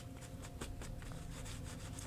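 Paper towel rubbing and wiping across a stencil on painted paper, buffing off excess spray ink. It comes as a faint run of short, irregular rubbing strokes.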